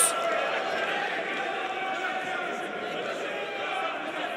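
Crowd in a boxing arena chattering: a steady murmur of many voices with no single voice standing out.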